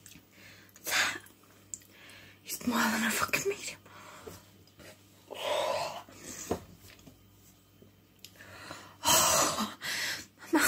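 A woman's wordless breathy gasps and huffs, in four bursts with the loudest near the end: her reaction to the burning heat of very spicy food.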